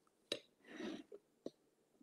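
A few faint clicks and one short soft scrape from a knife working cream cheese frosting out of its tub and across a cake.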